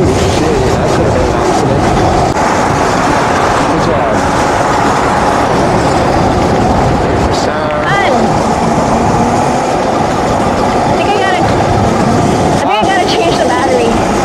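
Loud, steady wind rushing over the microphone of a camera carried on a moving electric bike. About eight seconds in and again near the end come short, wavering, high-pitched sounds.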